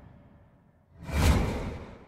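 Intro sound-effect whoosh: the tail of one sweep fades out, then a second whoosh swells about a second in and dies away.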